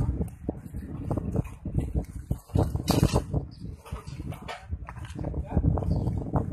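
Irregular knocks and scrapes of broken masonry and debris being shifted by hand in a collapsed building's rubble, with a louder scrape or clatter about halfway through, under indistinct voices.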